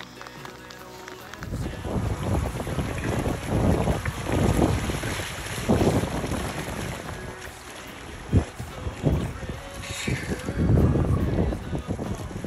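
Wind gusting over the microphone in uneven buffets, starting about a second and a half in, with a single sharp knock about eight seconds in.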